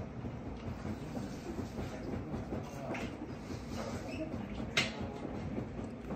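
Low, steady room rumble of a small restaurant, with a few light clicks of tableware, the sharpest about five seconds in.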